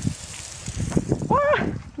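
A short, high-pitched exclaimed "O!" about a second in, over low outdoor background noise.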